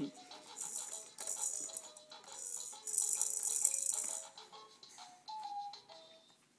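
Fisher-Price jumperoo's electronic play tray playing a short tune of stepping notes with bursts of maraca-like shaker sound, the toy's lights lit as the baby bounces. The tune fades out near the end.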